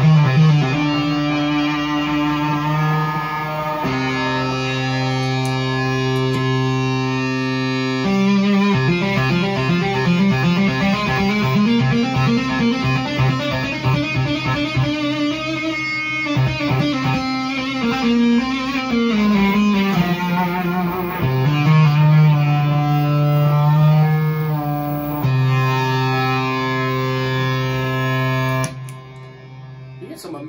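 Electric guitar played through an Onkel Amplification Death's Head fuzz pedal, a germanium-transistor fuzz with a 12AU7 preamp tube. It opens with held, fuzzed notes, moves into fast tapped runs rising and falling in pitch, and returns to held notes. The playing stops shortly before the end.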